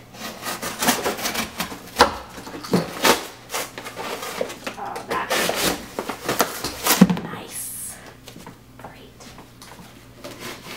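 A cardboard shipping box being cut open with a utility knife and its walls pulled down: repeated scraping, tearing and knocking of corrugated cardboard, busiest in the first seven seconds and quieter near the end.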